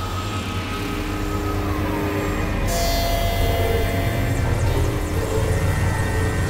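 Experimental synthesizer drone music: layered held tones over a heavy low rumble. A tone glides downward about a second in, and a brighter, hissier layer comes in a little before halfway.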